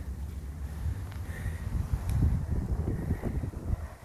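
Wind buffeting the microphone, a fluctuating low rumble that swells about halfway through, over the sound of road traffic.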